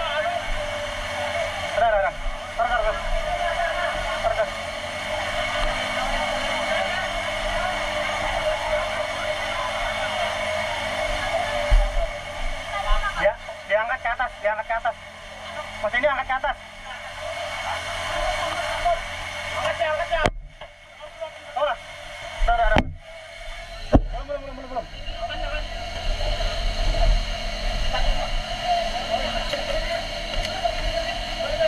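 An engine running steadily under the voices of a crowd of people. Several sharp knocks come about two-thirds of the way through.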